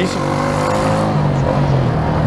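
Yamaha 150 single-cylinder motorcycle engine running while ridden, its pitch rising a little in the first second and then holding steady.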